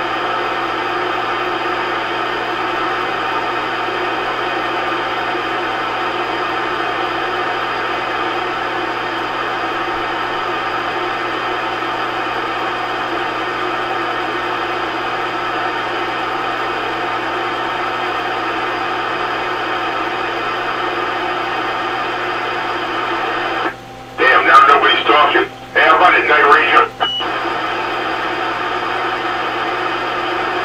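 CB radio receiver giving out steady static hiss on an idle channel. About 24 s in, a station keys up: the hiss cuts out, a brief garbled transmission comes through, it ends with a short beep, and the static returns.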